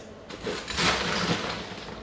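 Ice being scooped from an ice well: the cubes clatter and grind against each other and the scoop, a dense rattle that starts shortly after the beginning and runs until just before the end.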